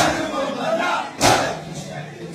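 A large crowd of men beating their chests in unison (matam): two loud slaps, one at the start and one about a second later, with the crowd's voices shouting in between.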